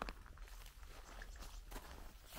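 Faint footsteps, scattered crunches and rustles over a low steady rumble.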